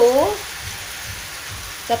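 Chicken pieces with onions and chili sizzling steadily in hot oil in a wok as fish sauce is spooned over them.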